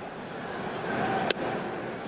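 A steady crowd murmur in a ballpark, then a single sharp pop just past a second in: a pitched baseball, a slider taken for a ball, smacking into the catcher's leather mitt.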